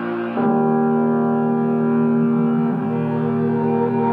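Background music: held keyboard chords with no vocals, the chord changing about half a second in and again near three seconds.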